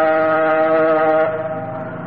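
A male Quran reciter holds one long, steady sung note in melodic Egyptian-style recitation. The note tapers off about a second and a quarter in.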